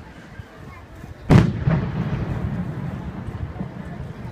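An aerial firework shell bursting with a single loud boom about a second in, followed by a long rumbling echo that slowly dies away.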